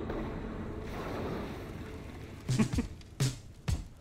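Film soundtrack playing back: a rushing, wave-like whoosh for about two seconds, then three sharp percussive hits as a music track kicks in.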